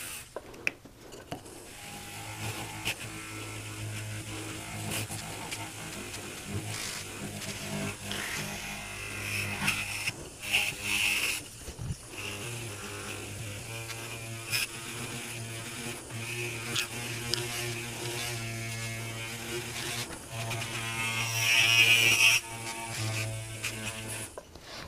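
Micromotor handpiece spinning a small buffing wheel against the tip of a bezel burnisher to bring it to a high polish: a steady motor hum and whine with hissy rubbing where the wheel meets the metal, swelling about ten seconds in and again near the end.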